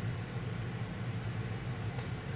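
Steady low hum with a faint even hiss: background room noise in a pause between words.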